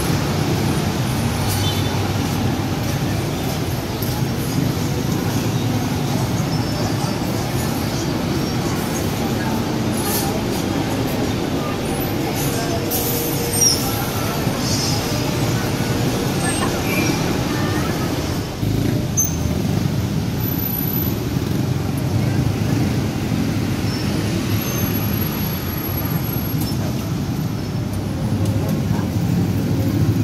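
Busy street ambience: steady road traffic from cars and motorcycles, with people's voices mixed in.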